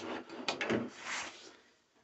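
Handling noise as a denim jacket is turned around: a few sharp clicks, then a short rustle of stiff painted denim that dies away near the end.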